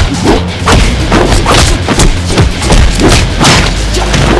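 A rapid series of heavy thuds, about two or three a second, from punch and impact sound effects, over loud music with a steady deep bass.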